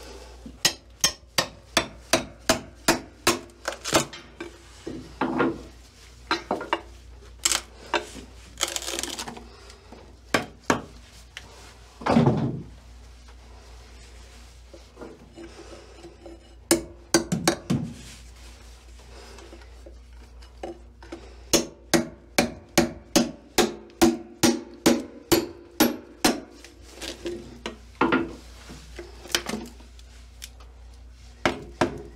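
Hammer blows on the wooden bulkhead, knocking out chunks of wood, in runs of quick strikes about three to four a second with a slight ring after each. Between the runs there are quieter pauses and a longer scraping sound about twelve seconds in.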